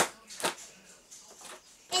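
A box cutter slicing into a plastic mailer bag: two sharp snaps about half a second apart, then faint crinkling of the plastic.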